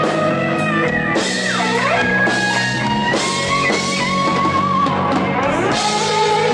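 Live rock band playing loud: a lead electric guitar plays held, sliding and bending notes over drums.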